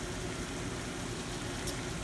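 Cauliflower rice and vegetables frying in butter in a pan: a steady, even sizzle.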